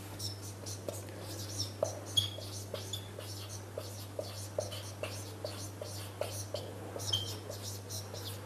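Marker pen writing on a whiteboard: a run of short squeaky, scratchy strokes and light taps as the letters are drawn, over a steady low hum.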